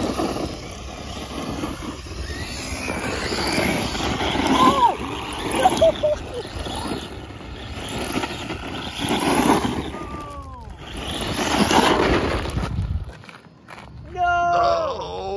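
GoolRC brushless motor in a Traxxas Stampede 4x4 RC truck driven hard on loose dirt: the motor whines, its pitch rising and falling with the throttle and falling away about ten seconds in, over the steady gritty noise of the tyres spinning and sliding on gravel.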